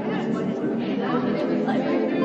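Babble of many people talking at once, with no single voice standing out.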